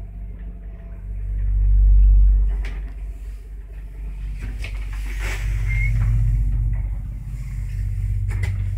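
ZUD passenger lift travelling down the shaft, heard from inside the doorless car: a steady low rumble that swells and fades, with a few sharp clicks and knocks as it passes the landings and a brief high squeak past the middle.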